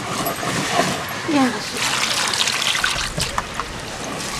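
Water splashing and trickling in a plastic basin as hands wash cut pieces of bata fish.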